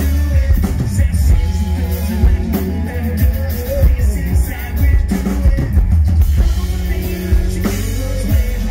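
Live rock band playing through a PA: a full drum kit with bass drum and snare, with electric guitars and bass underneath.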